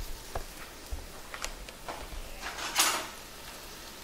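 Breaded mullet roe frying in hot pork lard in a frying pan: a soft, low sizzle with scattered small crackles, quiet because the roe holds little water. A brief louder rustle or clatter comes about three seconds in.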